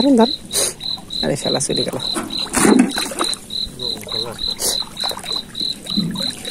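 Crickets chirping in a steady high pulse, about three chirps a second, with muffled voices and a few sharp clicks or knocks mixed in.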